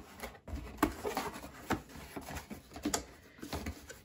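Long cardboard box being opened by hand: a few short taps and scrapes of cardboard as the lid comes off and the flaps are lifted.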